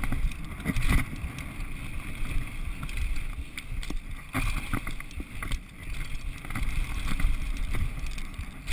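Downhill mountain bike rolling fast down a dry dirt trail: a steady rumble of tyres and wind on the microphone, with scattered knocks and rattles from the bike over bumps.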